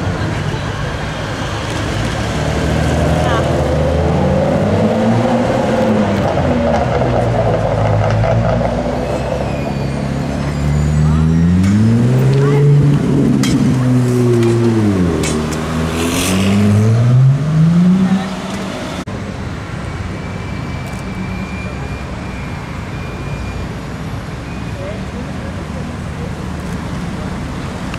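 Supercar engines taking a tight hairpin, falling in pitch as the cars slow and rising as they accelerate away, among them a Ferrari 296 GTS. The loudest pass comes about halfway through, with two rising pulls, and stops suddenly a few seconds later, leaving quieter steady street noise.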